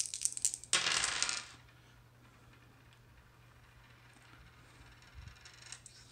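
Three dice clicking together as they are shaken in a hand, then thrown and clattering across a tabletop, settling about a second and a half in; after that only a faint steady hum.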